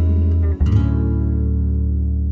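Closing bars of a song: a guitar chord struck about half a second in, left ringing and slowly fading.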